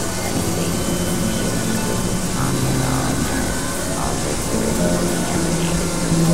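Experimental synthesizer drone and noise music: steady low drone tones that step between pitches every second or so, under a dense hiss, with faint swooping glides in the middle range.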